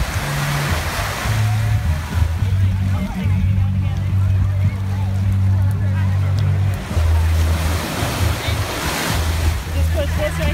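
Small waves breaking and washing up onto a sandy beach, with music's deep bass notes running underneath.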